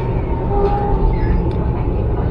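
Steady low rumble of a tram running on its rails, heard from inside the car, with a brief faint squeak about half a second in.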